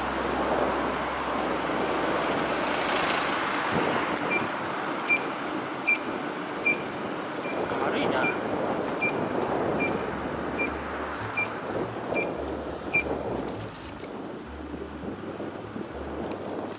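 Wind and road noise from riding an electric scooter through city traffic. From about four seconds in, a short high electronic beep repeats a little faster than once a second, about a dozen times, then stops.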